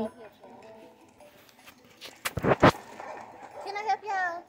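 Faint voices, broken a little past halfway by two sharp thumps about half a second apart, the loudest sounds here, with a wavering voice coming in near the end.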